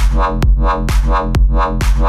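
Electro house club edit at the drop: a drum-machine kick about twice a second over a deep, continuous bass, with pitched synth notes sounding between the kicks.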